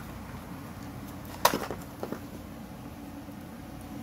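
Cardboard box handled as a small pump is lifted out of it: one sharp rustle about a second and a half in, then a few lighter clicks, over a low steady hum.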